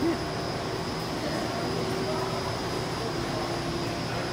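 Steady mechanical hum and rushing noise of a brewhouse hall, constant throughout, with a faint high steady whine over it.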